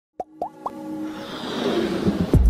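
Animated intro sound effects: three quick pops gliding upward in pitch, then a swelling whoosh with a held tone underneath as the title appears.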